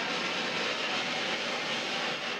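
Confetti cannon or blower firing: a steady, rushing hiss of gas driving confetti into the air.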